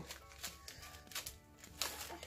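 Quiet background music, with a few faint clicks and crinkles from cookies and their paper wrappers being handled.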